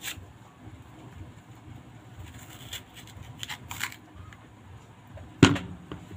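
Kitchen knife cutting through a peeled mango in short, scattered scraping strokes, with one sharp, louder knock near the end as pieces go onto the ceramic plate.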